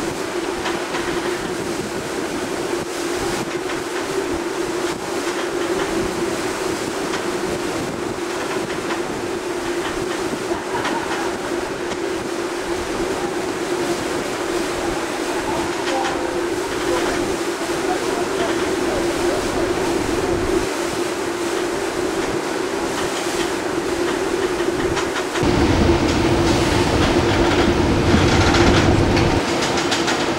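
Steady rush of wind and water at the bow of a large square-rigged sailing ship under way, over a constant low hum. A deeper rumble joins near the end.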